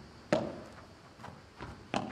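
A padel rally: the ball struck by solid padel rackets and bouncing off the court and glass walls. There is one sharp, ringing hit about a third of a second in, then lighter knocks near the end.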